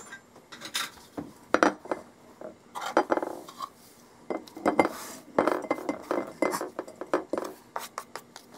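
A glass baking dish set down on a countertop, then spiralized sweet potato noodles tipped and scraped off a plastic cutting board into it: a run of irregular clinks, taps and short scrapes against the glass.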